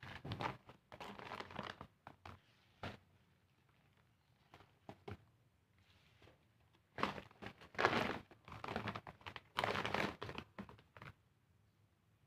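Plastic sacks crinkling and potting soil rustling as soil is scooped with a small plastic scoop into plastic bags used as planting pots. The sound comes in two spells of scooping, in the first few seconds and again from about seven to eleven seconds in, with a quieter pause between.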